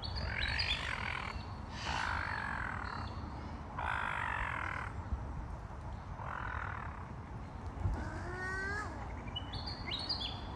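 Birds calling: four harsh calls of about a second each, spaced roughly two seconds apart, then a quick run of short rising notes near the end.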